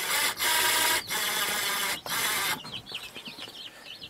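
Cordless drill-driver running in four short stop-start bursts as it drives a screw at an angle through a wooden handrail into a wall stud, hard going. After the last burst a run of quick high chirping clicks follows.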